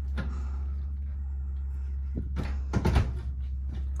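A brief clatter of knocks about two and a half to three seconds in, over a steady low hum.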